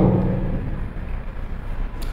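A pause in a man's talk: his voice trails off at the start, leaving a low, steady background rumble and hiss.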